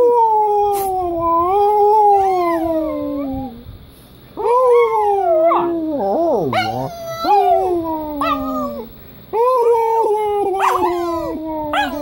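Small dog whining in long, drawn-out howling calls, three in a row, each a few seconds long and sliding slowly down in pitch; the middle call wavers and dips.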